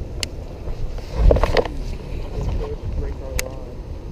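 Wind rumbling on the camera microphone, with short indistinct bits of voice and two sharp clicks, one just after the start and one near the end.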